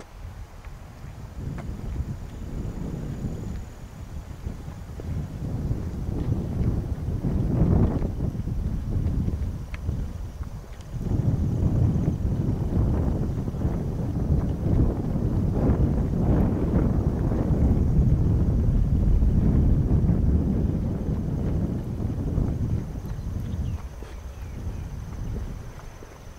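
Wind buffeting the microphone: a gusty low rumble that rises and falls, with a brief lull about halfway through.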